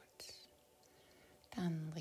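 A short breathy hiss from a woman about a quarter second in, then a quiet stretch, then her voice starting to speak near the end.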